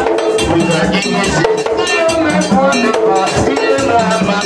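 Haitian Vodou ceremonial music: hand drums with a struck metal bell keeping the beat under singing voices.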